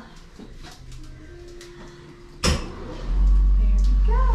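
Cryotherapy chamber's cooling system starting up: a sudden blast about two and a half seconds in, then a loud, steady low rush from about three seconds on as the cabin is chilled below freezing.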